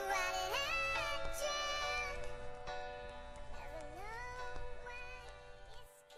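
Music: slow, sustained chords under a high, vocal-like line that glides up and down in pitch. It fades steadily, and the low bass drops out near the end.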